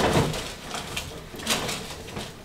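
Footsteps on an old wooden staircase as someone climbs it: a few separate knocks and scuffs of shoes on the boards, the first right at the start and two more about halfway through.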